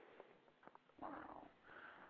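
Near silence, broken about a second in by a man's faint, quiet "wow".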